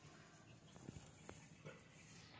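Near silence, with a few faint short knocks about a second in.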